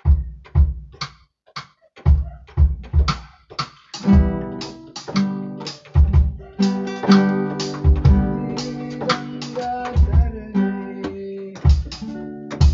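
Acoustic guitar improvising, with low percussive thumps keeping a steady beat. Fuller ringing chords come in from about four seconds in.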